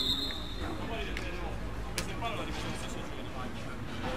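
The tail of a referee's whistle blast fades out at the start, then scattered players' voices call across the pitch. A single sharp knock comes about two seconds in.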